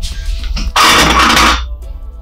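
Soft background music with long held tones. About a second in, a man clears his throat once, loudly and roughly, for under a second.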